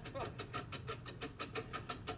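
Electronic blipping sound effect of a TV dating show's audience-vote tally: rapid, evenly spaced beeps, about six a second, while the vote percentages roll. Heard through a television speaker.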